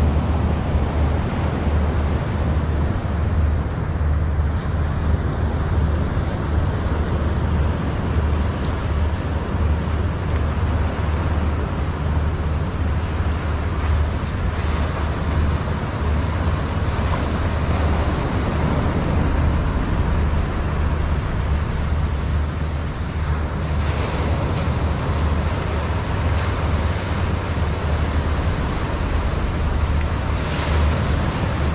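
Sea surf washing onto a sandy beach, a steady rushing noise that swells now and then as larger waves break, over a constant low rumble of wind on the microphone.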